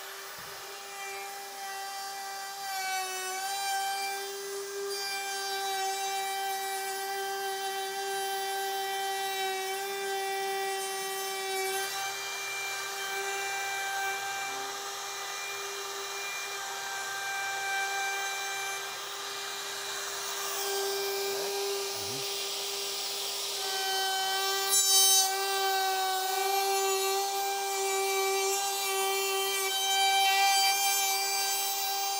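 Handheld router with a slot-cutting bit running with a steady motor whine as it cuts a spline slot into the edge of the wood floorboards, with the sound of the bit chewing through the wood.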